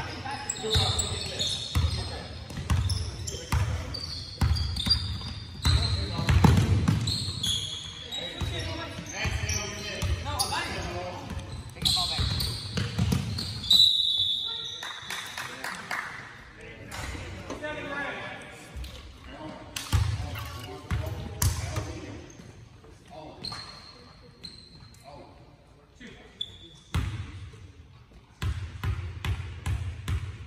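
Basketball game in a gym: a ball bouncing on the hardwood floor, sneakers squeaking and players' voices calling out, all echoing in the large hall. Busier in the first half, quieter with a few bounces near the end.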